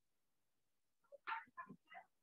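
A brief run of four or five short vocal sounds from a person over a video call, starting about a second in.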